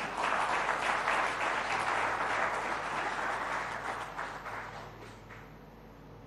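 Audience in a large hall applauding: dense clapping that starts at once, holds for a few seconds, then dies away over the last second or two.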